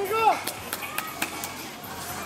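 A short shout that rises then falls in pitch, followed by a quick run of four or five sharp knocks, about four a second.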